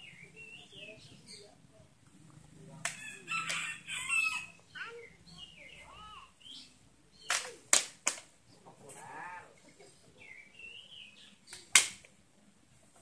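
A long wooden stick knocking sharply: three quick strikes about seven to eight seconds in and one louder strike near the end. Chickens cluck and call in the background, with a longer crowing call about three seconds in.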